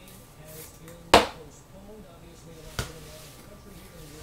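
Two sharp clicks of a hard clear plastic card case being handled, a loud one about a second in and a softer one near three seconds.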